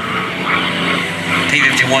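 Packard V-1650 Merlin V-12 of a P-51C Mustang running as the fighter makes a low pass, a steady drone that grows stronger in the second half.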